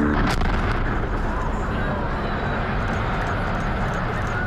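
Explosive demolition of a paper-mill smokestack: a sharp crack shortly after the start, over a dense, steady rumble of the blast and the collapsing structure.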